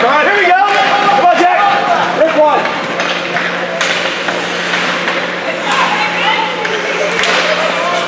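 Ice hockey rink during play: spectators shouting from the stands, with sharp clacks of sticks and puck and a noisy wash of skates on ice over a steady low hum.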